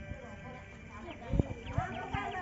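A few deep drum beats fall in the second half, irregularly spaced, under the voices of several people.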